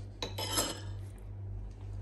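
A metal spoon clinking against ceramic bowls, a quick cluster of clinks and scrapes in the first second, then only faint small ticks, over a steady low hum.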